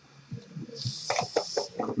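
A short hiss about a second in, with light rustles and knocks from a cardboard trading-card box being handled.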